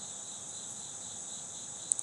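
A steady, high-pitched chorus of crickets chirping without a break.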